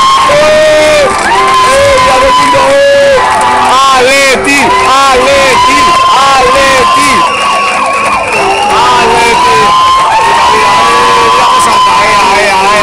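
A dense crowd shouting and cheering close by, with many voices overlapping and some held, drawn-out shouts. It is loud and unbroken throughout.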